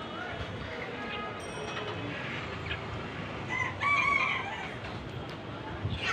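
Live market chickens calling, with one loud crow of about a second a little past the middle, over a steady background of market noise.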